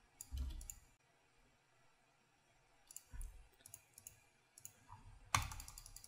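Faint computer mouse clicks, a few scattered short clicks with a gap of near silence between them and the loudest click near the end.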